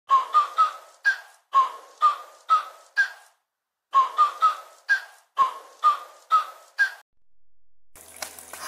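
A short intro jingle: a simple eight-note melody of short, sharp notes that die away quickly, played twice with a brief pause between.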